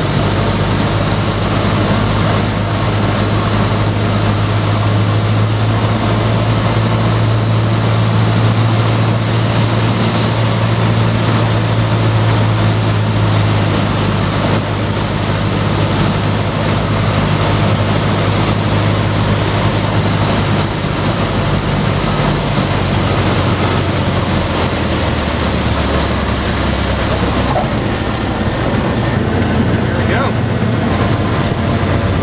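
Light aircraft's piston engine and propeller droning steadily inside the cabin, with a dense rush of wind noise over it. About two-thirds of the way through, the engine's pitch drops lower.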